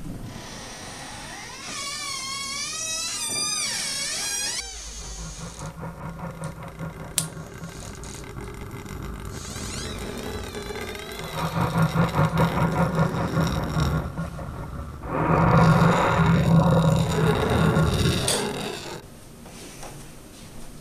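Horror sound effects and eerie music: a warbling tone that wavers up and down, then a low droning rumble that builds into two loud throbbing passages, one in the middle and one near the end.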